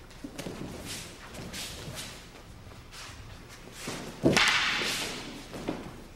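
Wooden practice swords (bokken) in paired practice: soft movement sounds at first, then one sharp, loud crack about four seconds in that rings on briefly in the hall.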